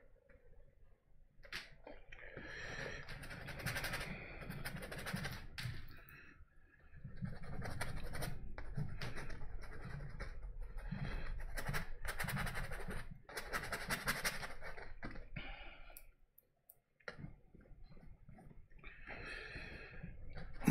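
Paintbrush scrubbing oil paint onto canvas in quick, repeated strokes, with a pause near the end.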